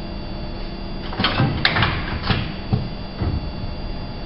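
A quick run of clicks and knocks, about half a dozen over two seconds starting about a second in, from handling the metal mold clamps of a hot-splicing press while a rubber profile is set into it. A steady electrical hum runs underneath.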